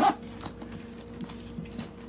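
Faint handling noise of a Veto Pro Pac canvas tool bag: light rustling and a few small clicks from its zipper pulls as the front flap is moved, over a steady low hum.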